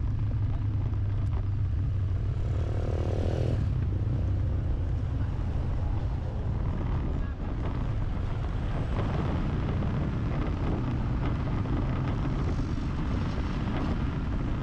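Steady low rumble of a vehicle driving along a street, engine and road noise with traffic around it. About two and a half seconds in, a short pitched engine drone sounds for about a second and stops.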